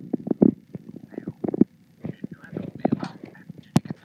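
Indistinct, broken-up talking with short low thumps between words. A single sharp click comes about three-quarters of the way through.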